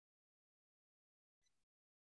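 Near silence: the recording drops to digital silence in a pause between words.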